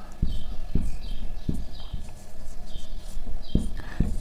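Marker pen writing on a whiteboard: a run of short squeaks from the tip, about two a second, with a few light knocks as the marker meets the board.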